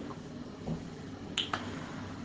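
Low room hiss during a pause in speech, broken by two short sharp clicks in quick succession about a second and a half in.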